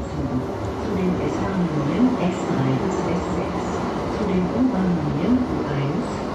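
Cabin noise of a Duewag Pt-type tram car in motion: a steady low rolling and running rumble, with a person's voice talking over it.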